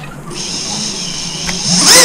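Emax Babyhawk-R micro quadcopter's brushless motors spinning up to a high, steady whine about a third of a second in. Near the end they throttle up into a rising whine, the loudest part, as the quad lifts off.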